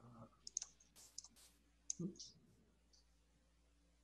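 Very faint, scattered short clicks over a near-silent line, with a brief hesitant 'uh' from a voice about two seconds in.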